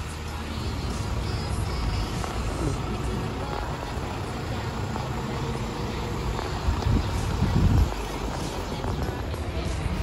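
Diesel city buses and street traffic: a steady low engine rumble that swells for about a second around seven seconds in as another bus draws up.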